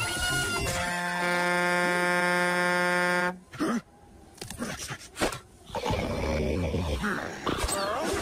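Cartoon soundtrack of music and sound effects: one long, steady, held note about a second in that cuts off suddenly, followed by a short quieter stretch with a few clicks before busy music and effects resume.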